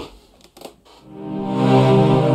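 Sampled cellos from Spitfire's Abbey Road Orchestra Cellos library, long articulation, played from a MIDI keyboard. A held low chord swells in about a second in and sustains, after a faint tap.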